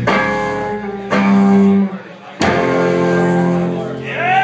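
Live band with electric guitar and upright bass hitting three big chords, each left to ring: a strike at the start, another just after a second in, and a third about two and a half seconds in, the closing hits of a song.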